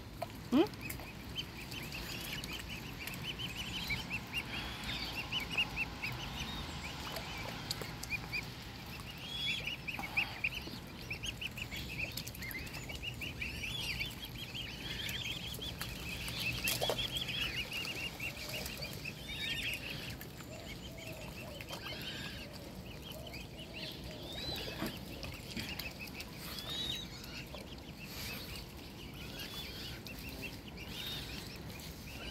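A brood of mute swan cygnets peeping almost continuously, many short, high chirps a second, while they feed.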